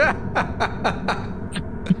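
Laughter in short repeated bursts, about three to four a second.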